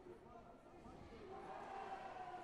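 Faint, indistinct voices in a large sports hall, with one voice drawn out more loudly near the end.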